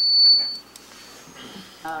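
A single high, steady whistle of microphone feedback through the room's sound system. It grows louder and then cuts off abruptly about half a second in.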